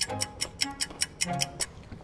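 Fast ticking clock sound effect, about six ticks a second, over background music.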